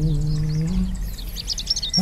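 Small birds chirping in quick, high twitters that grow busier toward the end, while a monk's held chanted smot note fades out within the first second.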